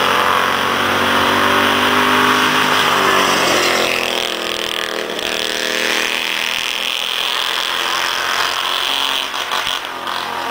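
Small-engined kart-class race car running laps on an oval, its buzzing engine dropping in pitch about three to four seconds in, then changing pitch again as it carries on around the track.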